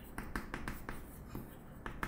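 Chalk writing on a blackboard: a run of light, quick ticks and scratches as the strokes of a word are made.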